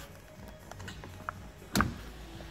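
A few light clicks over a low steady hum, then one short, sharp thump near the end.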